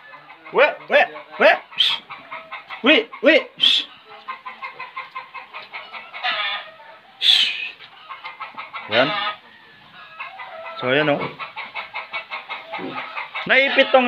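Piglets squealing and grunting in a pen: many short pitched calls, a few of them high and shrill, over a fast run of grunts.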